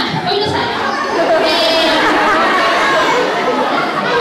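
Many children's voices chattering and calling out at once, overlapping, with no single clear speaker.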